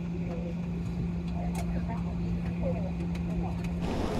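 Steady low hum and rumble inside the cabin of a parked or slow-moving Boeing 777-300ER, with faint passenger voices in the background. The hum cuts off just before the end and gives way to louder, busier cabin noise.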